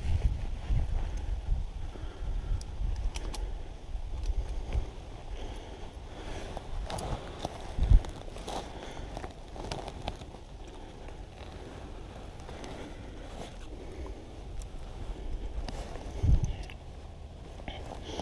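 Handling and rustling noises: scattered clicks and soft rustles, with a low rumble on the microphone for the first few seconds and two short thumps, about eight seconds in and near the end.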